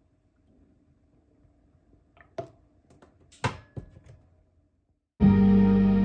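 A few light knocks from a milk carton and a glass coffee cup being handled on a countertop, the loudest about three and a half seconds in. Then calm, steady background music starts abruptly about five seconds in.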